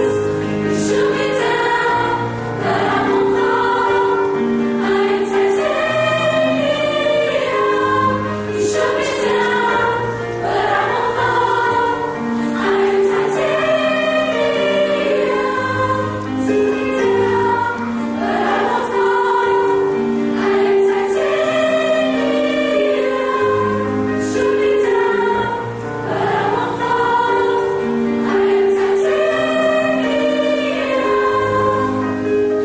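High school choir singing in harmony, several voice parts holding long notes that change every second or two.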